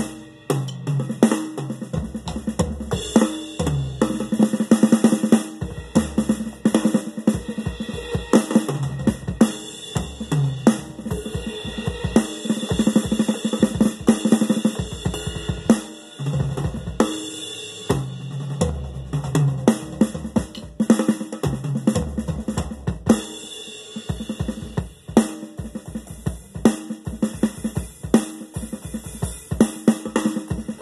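Electronic drum kit played through a drum amplifier in a fast, busy beat of kick, snare, hi-hat and cymbal sounds, with short lulls about halfway and two-thirds of the way through.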